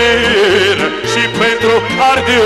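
Romanian folk dance music for a hora circle dance: a wavering, heavily ornamented melody over a steady, evenly pulsed bass beat.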